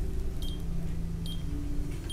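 Breath carbon monoxide monitor giving short high electronic beeps, three at an even pace about a second apart, over a low steady hum.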